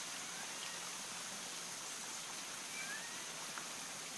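Steady wash of running water from storm runoff, with a faint steady high-pitched whine and a few faint short chirps over it.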